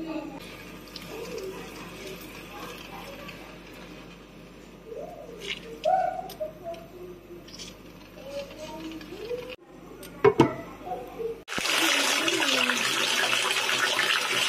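Water running into a bathtub: a steady rushing that starts suddenly about two-thirds of the way through and is the loudest sound, after a quieter stretch of faint background voices.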